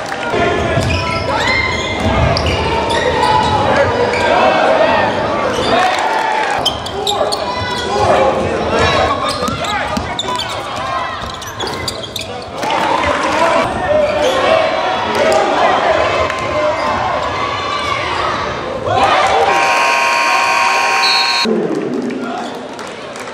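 Basketball game in a large gym: a ball dribbling and bouncing on the hardwood under players' and spectators' voices. About 19 seconds in, the scoreboard horn sounds one steady blast of about two and a half seconds, signalling the end of a period.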